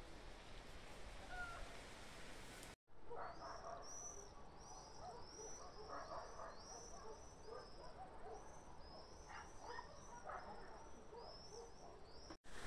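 Faint outdoor ambience broken by a brief dropout about three seconds in. After it, small birds chirp faintly: short high chirps repeating two or three times a second.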